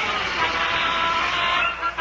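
Panic on a radio comedy sound stage: several women screaming and shrieking together in a commotion, with a brief drop in the noise near the end.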